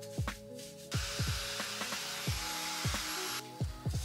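A handheld hair dryer blowing on wet hair, starting about a second in and cutting off shortly before the end, with a faint high whine over its hiss. Background music with a steady beat plays throughout.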